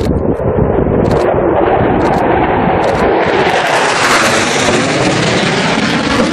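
Low-flying military aircraft passing close, its rushing noise swelling and brightening to a peak about four to five seconds in, with wind buffeting the microphone. Short sharp clicks come about once a second in the first three seconds.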